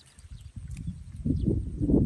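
Dry grass and stalks rustling and crackling close by as they are handled, starting about a second in and growing louder.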